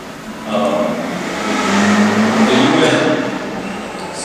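A man's voice lecturing in a large hall. Under it, a rush of noise swells and fades in the middle.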